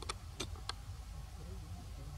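A young monkey eating a piece of fruit: three short, sharp clicks in the first second over a steady low rumble.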